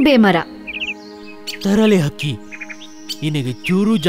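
Cartoon bird chirps: a quick run of three or four short notes about a second in and another run just before three seconds, over steady background music, with bursts of a character's voice speaking in between.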